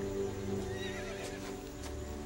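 A horse gives a brief, wavering whinny about a second in, over background music of steady held notes.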